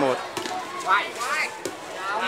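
Air-volleyball rally: a few sharp slaps of hands striking the light inflatable ball, with a girl's voice calling out about a second in.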